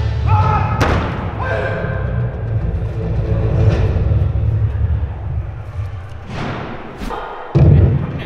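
Background music with a heavy bass line that fades out over the last few seconds. A sharp thud comes about a second in, and a short, louder thump near the end.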